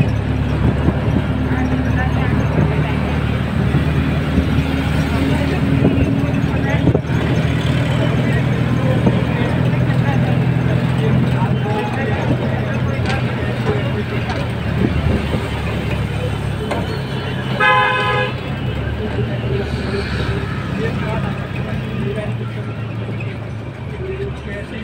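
Steady road and engine noise of a moving vehicle heard from inside it, with a low engine hum. A vehicle horn gives one short toot about three-quarters of the way through.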